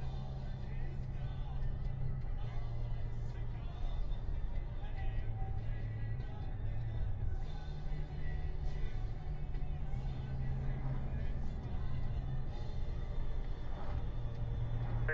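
Music playing over the steady engine and road noise of a car driving.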